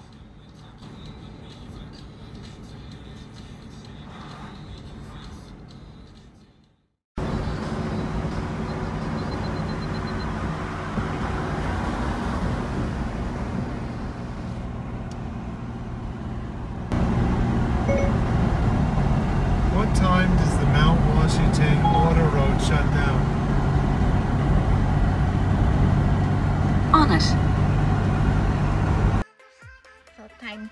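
Car road noise heard inside the cabin while driving on a highway, with music and a voice or singing over it. The sound cuts out just before a quarter of the way in, comes back louder, and steps up again at about halfway, where the voice is strongest.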